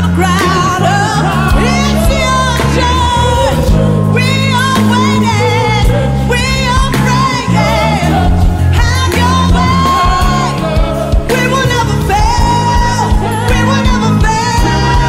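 A woman singing a gospel song live, with wide vibrato on her held notes, over a band's steady bass line.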